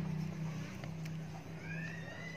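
A single long animal call, like a cat's meow, that rises and then falls in pitch, beginning near the end over a low steady hum.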